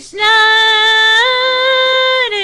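A young female voice singing one long held note unaccompanied, stepping up in pitch a little past halfway through.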